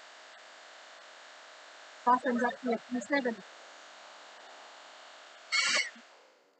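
Hand-held CHI hair dryer running steadily, blowing hot air onto a card to soften the adhesive under an acetate sheet so it can be lifted and repositioned.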